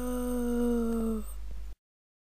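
A single long, held pitched tone: it rises slightly at its start, holds steady and fades out about a second and a quarter in. A low hum remains until the sound cuts off abruptly.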